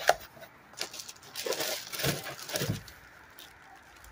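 A sharp knock, then rustling and crinkling of a clear plastic bag as a boxed toy car is picked up and handled.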